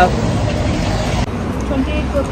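Town-centre street noise: road traffic passing with a steady low rumble.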